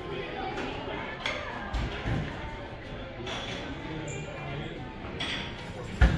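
Chatter of other diners in a busy buffet hall with music playing in the background, and a couple of low thumps about two seconds in.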